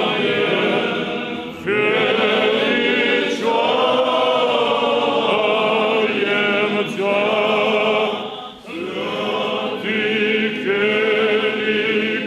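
Unaccompanied Orthodox liturgical chant sung by a choir of voices, in sustained phrases with brief breaks about two seconds in and again near nine seconds.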